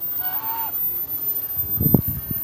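A domestic goose honks once, faintly, about half a second in. Just before the end there is a sharp low thump.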